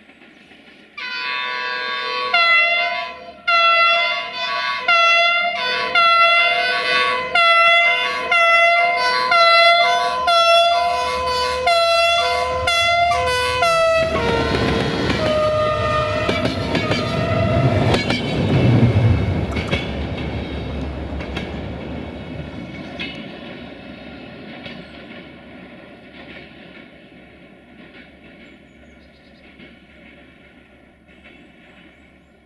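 Diesel locomotive 64-1300-4 (GM-engined) sounding its multi-tone horn in about a dozen short blasts, roughly one a second. Then the locomotive and its passenger coaches pass with a rumble and clatter of wheels on rail that peaks a few seconds later and fades away.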